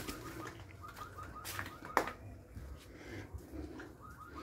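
Faint animal calls repeated steadily at night, with a sharp click about two seconds in.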